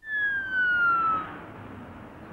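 Police car siren: a single falling wail that starts abruptly and dies away after about a second and a half, leaving a steady hiss.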